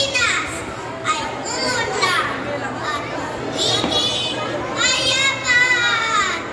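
A young child's high-pitched voice calling out loudly in several short spoken phrases, with the loudest call near the end, echoing in a large hall.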